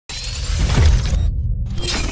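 Audio logo sting for a podcast intro: a sound-design hit that starts suddenly with heavy bass and bright, glassy highs. The highs drop away about two-thirds of the way through, then return in a short rising swell near the end.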